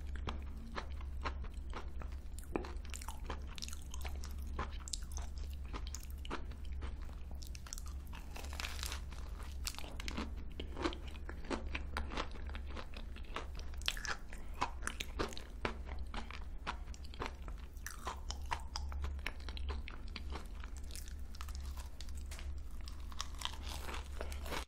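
Close-up eating of a crisp, custard-filled crocanche (craquelin-topped cream puff): bites and open chewing with many small crackling crunches of the crusty shell, over a low steady hum.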